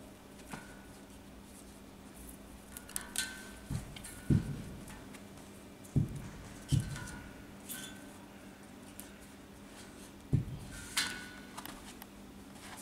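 A few dull thumps and scuffing, rustling noises as a kettlebell with a rubber resistance band tied to its handle is handled and shifted on artificial turf.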